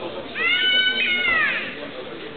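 A horse whinnying: one high call, about 1.3 s long, that rises a little and then falls away at the end.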